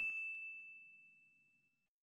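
A single bright, bell-like ding sound effect, already ringing, fading out over about a second.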